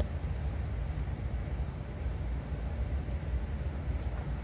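Steady low rumble with a faint hiss and no distinct events.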